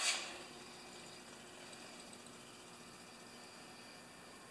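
A tool chest drawer sliding open: a brief rushing noise right at the start that fades within half a second. Faint steady room tone follows.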